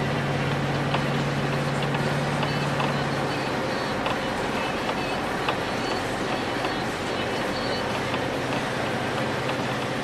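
Inside a moving vehicle's cabin on a snowy road: steady road and engine noise. A low engine hum fades out about three and a half seconds in, leaving the road noise.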